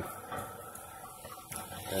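Venturi pool jet discharging underwater, a steady rushing, churning water noise, while its deck-mounted air-control knob is turned down so the jet runs on water alone, without added air bubbles.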